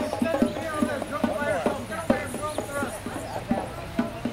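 Hand drums beaten in a steady rhythm of about three strokes a second, with voices calling over them.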